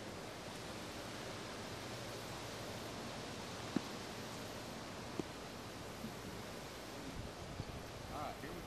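Steady outdoor hiss of wind and open-air ambience, with a faint sharp tick a little under four seconds in, another just after five seconds, and a few smaller ones near the end.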